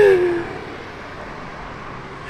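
A woman's short laugh, falling in pitch, tearful and close to a sob. After it comes a steady outdoor background hiss.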